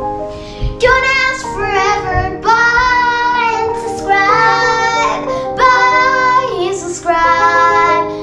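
A girl singing a melody in long held notes over background instrumental music, the singing starting about a second in.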